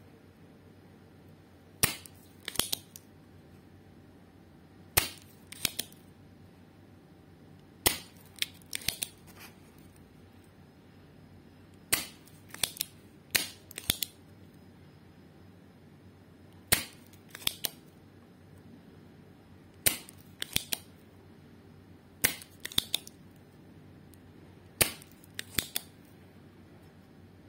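Spring-loaded desoldering pump (solder sucker) being fired and re-cocked while clearing solder from an IC's pins: eight sharp snaps about every three seconds, each followed by a few lighter clicks.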